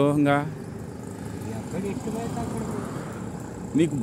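Speech: a voice talks for the first half second and starts again just before the end. Between the two, there is a quieter stretch of steady outdoor background noise with faint voices.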